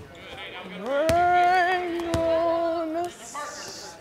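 A woman's close-miked voice sings one long wordless note. It slides up about a second in and is held steady for about two seconds. Two sharp knocks sound under it, and a brief hiss follows near the end.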